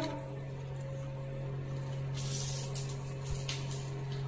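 Dry banana-leaf wrapping of a food parcel being handled and untied: a couple of brief rustles a little past halfway, over a steady low hum.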